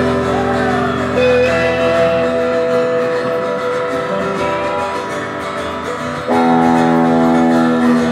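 Live rock band with electric guitars playing long held chords over bass and drums. A louder new chord is struck about six seconds in.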